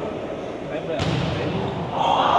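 A volleyball served: one sharp slap of the hand striking the ball about a second in, echoing briefly in the gym hall.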